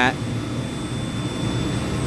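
Steady low drone of chiller plant machinery running, with a faint steady high whine above it.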